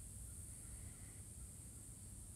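Faint outdoor background: a steady low rumble under a steady high hiss, with no distinct sound standing out.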